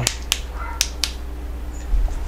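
Sharp plastic clicks of the push buttons on an e-bike handlebar control switch being pressed, about four in the first second, switching on the lights and turn signals. A steady low hum lies underneath.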